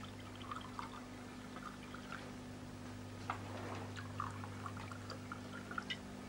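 White wine being poured from a glass bottle into cut-glass wine glasses: a faint, uneven gurgle and splash of liquid, with a few light clicks along the way.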